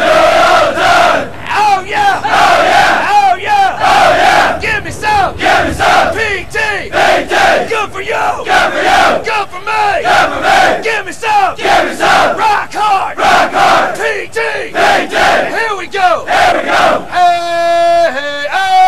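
A large group of Marine recruits shouting a military cadence chant in unison, in a steady rhythm of loud syllables with the words blurred together. Near the end one long note is held.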